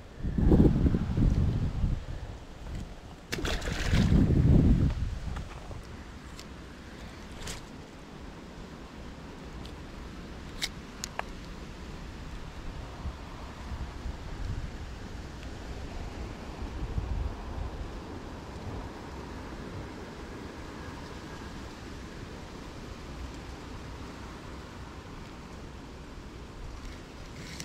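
Wind gusting on the microphone in loud low surges during the first few seconds, with a short sharp noise about three and a half seconds in, then a steady low wind rumble over lapping water.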